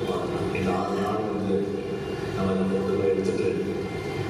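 Voices in long held notes, each about a second, more like group chanting than ordinary speech.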